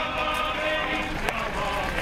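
A crowd of mourners singing a funeral hymn together, with sustained sung notes, over the shuffle of many footsteps on a gravel road.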